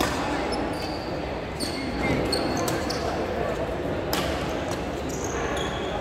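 Badminton rally: several sharp racket strikes on a shuttlecock, the loudest about four seconds in, with short high squeaks of court shoes on the floor, over a background murmur of voices.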